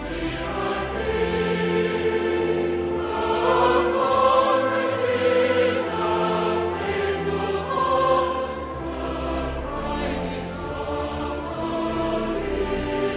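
Choral music: a choir singing long held notes that change every second or two.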